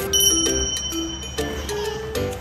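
Light background music with a single bright bell ding that sounds just after the start and rings on for nearly two seconds.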